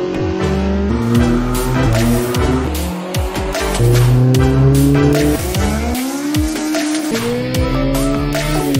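Music mixed with a car engine revving, its pitch sweeping up and down several times.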